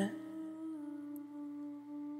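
A woman humming one long, steady, closed-mouth "mm" note, dipping slightly in pitch partway through.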